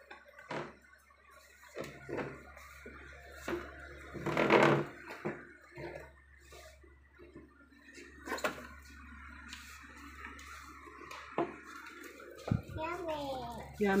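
Toddler babbling in short bursts with no clear words, with a few sharp taps and a low knock as a wooden craft stick works play-dough on a tiled tabletop. Near the end she makes a sing-song vocalisation that slides up and down in pitch.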